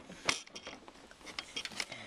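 Plastic Land Rover Discovery 4 headlight unit clicking and knocking against its mounting as it is pushed over a locating pin into a tight fit: one sharper knock just after the start, then a run of small clicks.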